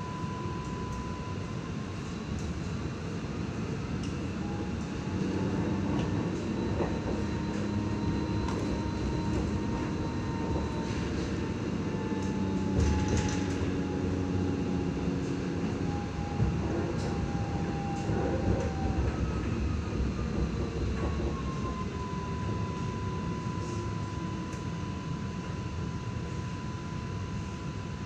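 Cabin sound of an Alstom Citadis X05 light rail vehicle running: a steady electric whine from the traction equipment that drops in pitch a second or two in and climbs back a few seconds before the end. Under it is the rumble of the wheels on the rails, louder through the middle.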